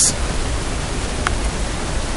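Steady hiss of a noisy recording with no speech, with one faint click about halfway through.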